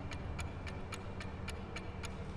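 Quiet, even clock-like ticking, about three to four ticks a second, that stops near the end.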